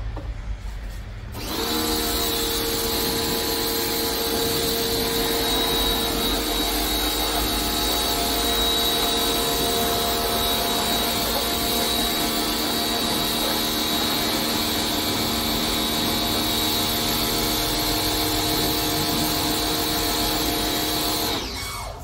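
Electric pressure washer motor switched on, running steadily with a hum and a high whine for about twenty seconds, then switched off shortly before the end.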